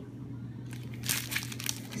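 Clear plastic packaging crinkling as it is handled and unwrapped, picking up about a second in after a quieter start, over a faint steady low hum.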